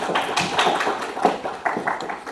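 A small audience clapping: a light patter of separate hand claps.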